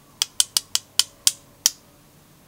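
About seven sharp, clicky taps, unevenly spaced at a few per second, from a paint-loaded watercolour brush being tapped to splatter white star dots onto wet paper.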